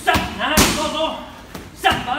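Roundhouse kicks smacking into Thai pads: a sharp hit at the start, a louder one about half a second in, and another near the end, with voices between the hits.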